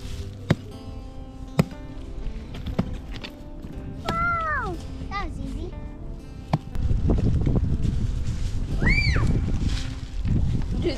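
Hatchet blows striking a dry, rotten log: four sharp, unevenly spaced knocks, the last about two-thirds of the way through. A loud low rumble fills the last three seconds.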